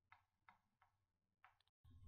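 Very faint chalk strokes on a blackboard while a word is written, a row of short scratches about three a second.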